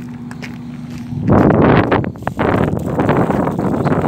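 Loud, gusty wind noise on a phone microphone that starts suddenly about a second in, mixed with rustling and crackling as the camera brushes through dry scrub.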